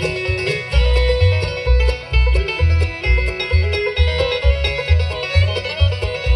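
Live bluegrass band playing an instrumental passage with no singing: banjo, acoustic guitar and mandolin picking, a fiddle bowing long notes, and an upright bass playing about two notes a second.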